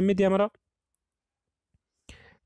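A man's speech ends about half a second in, then near silence with two faint ticks.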